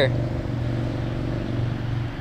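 Road traffic as a steady low drone.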